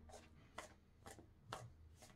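Tarot cards being shuffled by hand: faint soft taps of cards slipping and landing, about one every half second.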